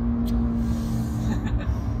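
BMW M2's turbocharged straight-six droning at a steady note while cruising on the motorway, heard inside the cabin over low road rumble.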